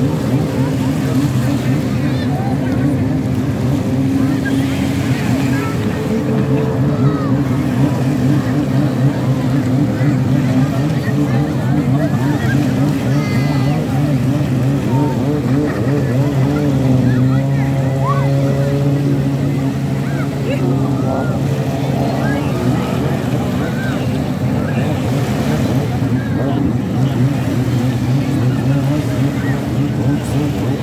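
Steady drone of a motorboat engine running, its pitch holding nearly level, with the voices of people in the water calling over it.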